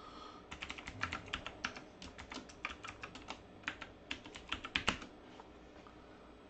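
Typing on a computer keyboard: a quick, uneven run of key clicks, the last few strokes the hardest, stopping about five seconds in.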